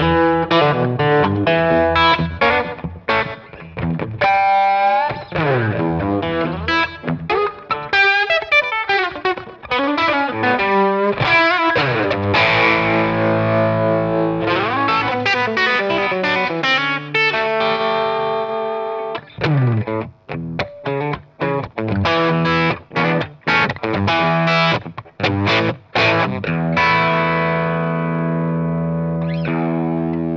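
Telecaster-style electric guitar played loud through an amp with overdrive, delay, reverb and harmonic tremolo pedals. Bending, sliding notes in the first half give way to a ringing wash of chords, then quick picked notes and a held chord near the end.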